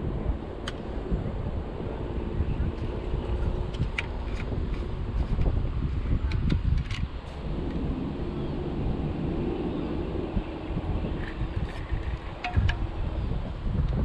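Wind buffeting the camera microphone on the kayak's bow, a steady low rumble, with a few light clicks scattered through it.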